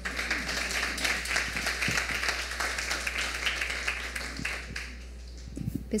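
A small audience applauding for about five seconds, dying away near the end.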